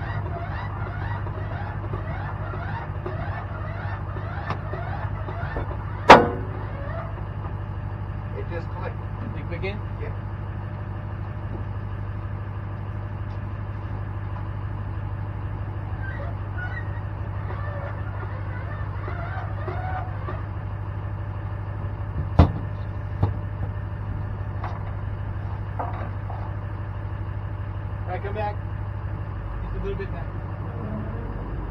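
A truck engine idles in a steady low hum. About six seconds in comes one loud, sharp metallic clunk: the fifth-wheel hitch's lock snapping closed around the kingpin collar. Two smaller knocks follow much later.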